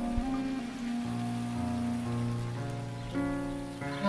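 Gentle instrumental background music with long held notes and chords, over a steady rain-like hiss. The music dips briefly near the end.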